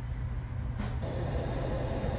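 A steady low rumble with a faint hiss, in a pause between voices.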